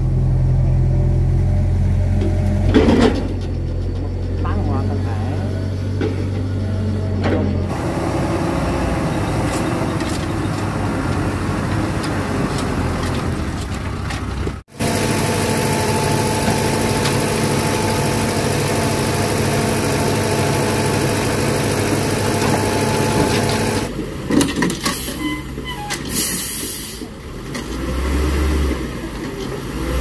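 A light dump truck's diesel engine running steadily, then held at raised revs to work the tipper as the bed lifts and a load of soil slides out of the back.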